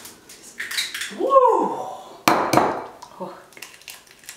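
One sharp clack of kitchenware against a ceramic mixing bowl a little over two seconds in, after an excited 'woo!'.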